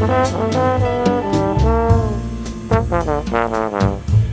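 Big band jazz with a trombone playing a melodic line, one phrase sliding down in pitch, over low bass notes and regular cymbal strokes.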